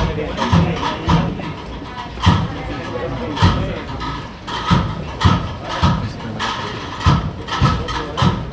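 Bearers' feet scraping and stepping on the street in short, slightly uneven steps about every half second to second as they carry the paso forward, over the murmur of the crowd.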